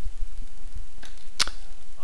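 A single computer mouse click about one and a half seconds in, over a steady low hum.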